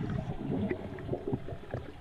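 Underwater, a diver's exhaled air bubbles gurgle and pop in a rapid, irregular stream.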